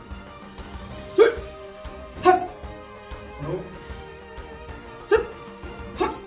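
A martial-arts instructor shouting short drill commands, four sharp calls about a second or so apart, over background music.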